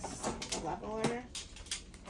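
A few words of speech, then several light clicks and knocks as small items are picked out of a plastic tray.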